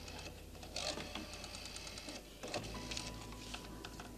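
Rotary telephone being dialled: quick runs of dial clicks, with a faint steady tone starting about two-thirds of the way through.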